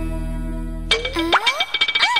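Comedy film background score: a held low chord fades, then about a second in a comic cue starts with springy sliding 'boing' glides that swoop up and down over a steady high tone.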